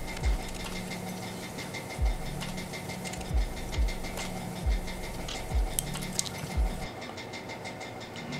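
Hands handling the small plastic parts of a car key fob while the old coin-cell battery is taken out of its holder: faint clicks and low thumps about once a second, over a low hum that comes and goes.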